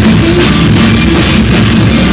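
Heavy metal band playing live and loud: distorted electric guitar, bass guitar and a drum kit with fast, continuous drumming and cymbals.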